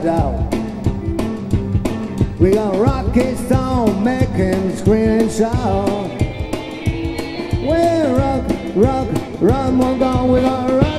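Rock and roll band playing live: hollow-body electric guitar and drum kit on a steady beat, with a lead melody bending in pitch over it.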